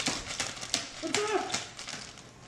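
A baby's short, high-pitched squeal of delight about a second in, over the crackle of a thin plastic bag being shaken and crumpled.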